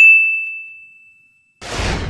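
A bright notification-bell ding sound effect rings out on one high tone and fades away over about a second and a half. Near the end a short whoosh comes in as the graphic clears.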